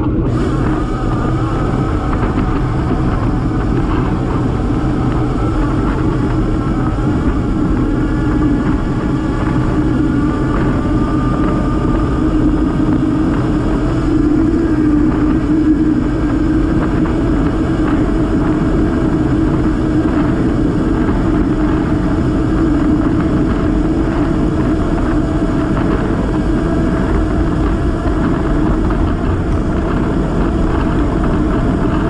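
Steady wind and road noise of travel at speed on a moving camera, with a droning hum that holds throughout.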